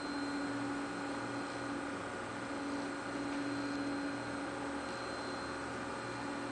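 Motors of a Minipa Smart Man robot arm trainer running: a steady hum and whine, with a low tone switching on and off in roughly one-second stretches. The held whine stops about four seconds in.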